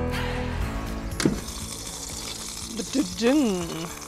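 Background music ending right at the start, then a soft steady hiss with a single click about a second in. Near the end a person's voice makes one short sound that rises and falls in pitch.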